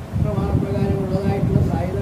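A man speaking Malayalam, talking on without a pause.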